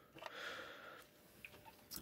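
Near silence with faint handling noise and a few light ticks as a red plastic box is moved about over a wooden workbench.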